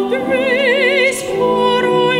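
A female soloist singing in a classical style with wide vibrato on held notes, accompanied by piano.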